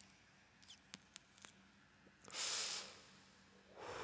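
Faint intro sounds: a few soft clicks in the first second and a half, then two short hissing swells of noise, one in the middle and one near the end.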